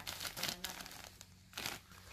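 Clear plastic bag of dried herbs crinkling as it is handled, in short rustles near the start and again briefly late on.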